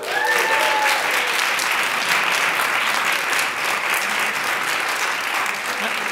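An audience clapping steadily.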